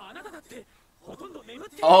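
Japanese anime dialogue from the episode: a character's strained, high-pitched voice delivering a line, quieter than the room. Near the end a man exclaims "Oh!" and laughs loudly.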